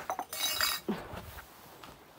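A brief, high-pitched clinking ring about half a second long, near the start, followed by a short, low, falling sound.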